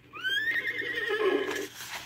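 Horse whinnying, a recorded sound effect on a read-along book record: one call that rises sharply in pitch, then holds and quavers for over a second. The whinny is the record's cue to turn the page.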